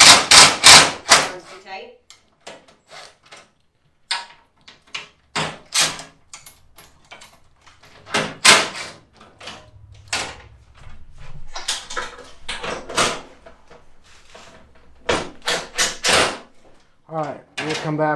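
Short runs of a cordless impact driver and the knocks and clacks of a plastic-and-metal side-by-side door being fitted and handled: a loud cluster of sharp clacks in the first second or so, then scattered knocks, with another cluster near the end.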